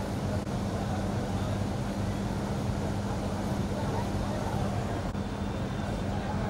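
Steady venue ambience: a constant low hum under indistinct background voices.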